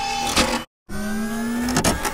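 Sound-effect motor whir of a machine moving: a steady tone that cuts out completely for a moment just over half a second in, then comes back rising gently in pitch, with a few clicks near the end.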